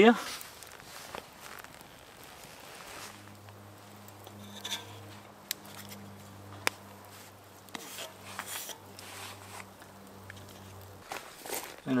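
Quiet cooking sounds from a tortilla on a cast-iron griddle over a campfire: scattered light clicks and scrapes as a wooden spatula works the tortilla. A faint steady low hum runs from about 3 s in until about 11 s.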